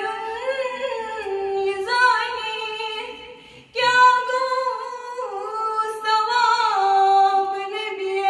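A girl singing a Kashmiri naat unaccompanied, in long held notes with small bends in pitch, breaking once for a short breath about halfway through.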